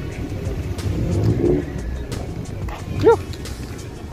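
Car meet ambience: a low rumble of cars under background music, with a short rising-and-falling shout about three seconds in.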